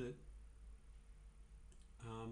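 Near silence with a low steady hum, broken by a couple of faint clicks near the end.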